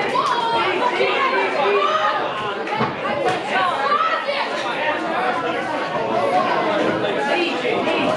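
Many voices of a ringside crowd in a hall, shouting and talking over one another without a break, with a few short sharp knocks among them.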